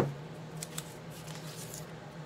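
Cardboard signs being handled: a sharp knock right at the start as a sign is raised, followed by a few faint scrapes and rustles of cardboard.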